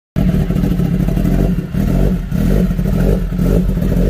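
Kawasaki Ninja ZX-10R's inline-four engine running loud through a full-system Arrow exhaust and being revved, with brief dips in level about one and a half and two seconds in.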